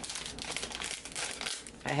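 A plastic bag crinkling in irregular rustles as it is handled.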